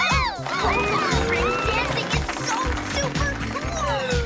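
Upbeat cartoon dance music with a steady beat, with high squeaky chirps and a slow rising tone over it.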